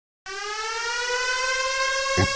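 A siren-like synth tone opening a dance-pop track. It starts abruptly about a quarter second in as one held note, gliding slowly upward in pitch and growing louder.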